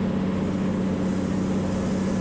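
Cirrus SR22's Continental IO-550 engine and propeller droning steadily in flight, with a hiss of air noise over it.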